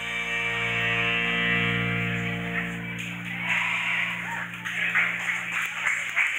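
A live rock and soul band holds its final chord after closing hits, the sustained notes ringing out and slowly fading. From about halfway in, audience voices and scattered clapping rise over the dying chord.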